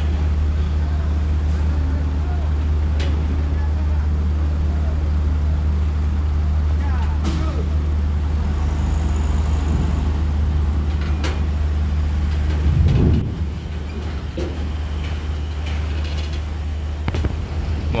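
Diesel engine of a medium bus running at low speed with a steady low hum as it creeps over a ferry's steel loading ramp, with scattered clanks. About 13 seconds in there is a short louder burst, then the hum eases off.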